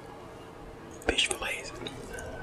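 Quiet at first, then about a second in a short, close-miked woman's whisper lasting about half a second.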